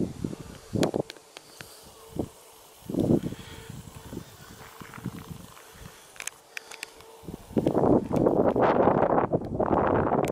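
Strong wind buffeting the camera microphone in gusts, with short rumbling blasts, then turning into dense, continuous wind rush about seven and a half seconds in.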